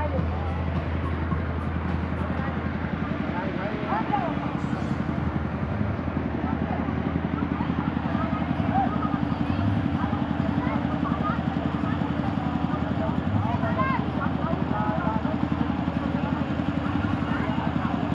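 Scattered background voices and chatter of people in a large event tent, over a steady low rumble that thickens about six seconds in.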